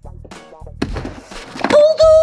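Upbeat background music with a steady bass beat and percussive hits. Near the end a loud, high note rises and is held.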